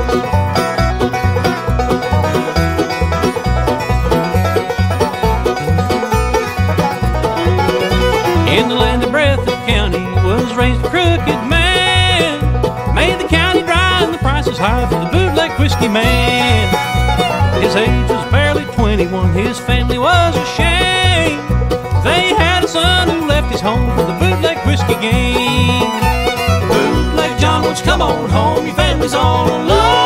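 Instrumental bluegrass band music: a banjo and guitar over a bass with a steady beat, and a sliding melody line joining from about eight seconds in.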